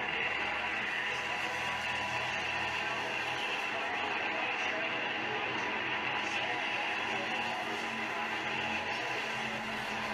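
Pure stock race cars running in a pack, their engines heard together as a steady, dense sound on an old camcorder recording.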